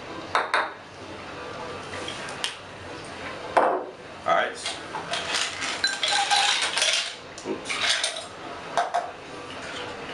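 Glassware and bottles clinking and knocking on a bar top as a cocktail is built in a tall glass, with a longer clattering pour into the glass from about five to seven seconds in.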